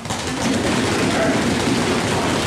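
Dense, steady clatter of many quick hits from a locker room full of hockey players, coming in sharply just after the start.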